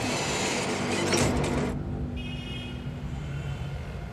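Lift doors sliding open with a rushing sound, followed by a steady hum and a faint high whine.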